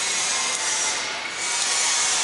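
Water streaming and spraying out of a large open flanged steel pipe and splashing down: a loud, steady hiss that swells about a second in.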